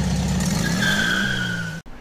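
Sound effect of a car engine running, joined about halfway through by a steady tire squeal that falls slightly in pitch; the sound cuts off abruptly just before the end.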